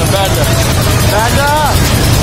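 Fairground train ride running, a steady low rumble, with people's voices calling out over it, loudest just past the middle.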